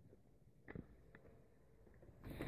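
Near silence, broken by two faint short clicks, one a little under a second in and one a little over.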